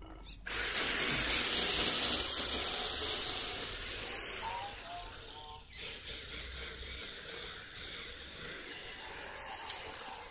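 RC drift car driving off and sliding its tyres across asphalt: a loud hiss that starts about half a second in and fades as the car gets farther away.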